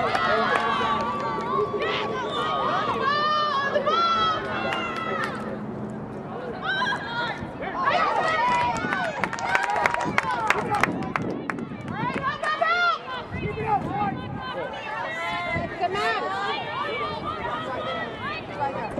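Lacrosse players and coaches shouting across the field, many overlapping high-pitched calls, with a run of sharp clacks in the middle.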